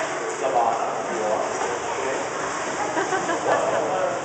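Indistinct voices talking, with a steady hiss, in the echo of an indoor swimming pool hall.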